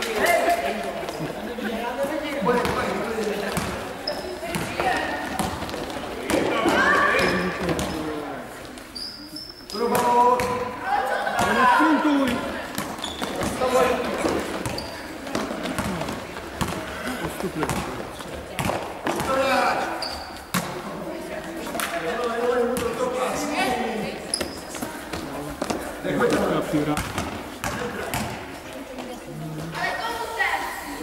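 A basketball bouncing and being dribbled on the court floor during a game, with a ball-bounce knock every so often. Players and onlookers call and shout in the hall throughout.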